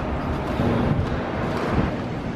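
Steady low rumbling and rushing noise, like wind buffeting the microphone.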